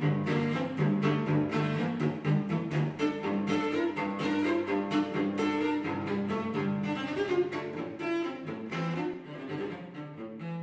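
Solo cello, bowed, playing a quick passage of short notes that change several times a second in the low and middle register, easing a little in loudness near the end.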